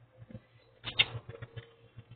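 Soft rustling and scratching of a dog shirt being pulled onto a dog and adjusted by hand, with a short scratchy burst about a second in, over a faint low steady hum.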